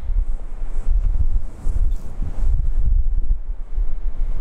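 Air buffeting the microphone: a loud, uneven low rumble that comes and goes in gusts.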